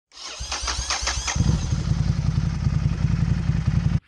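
Honda CRF250L single-cylinder motorcycle engine turning over with an irregular clatter, then catching about a second and a half in and running with a steady, rapid low beat. The sound cuts off abruptly at the end.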